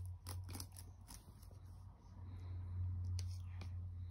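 Dell laptop keyboard keys clicking irregularly under a baby's hands, several quick clicks in the first second and a few more later, over a steady low hum.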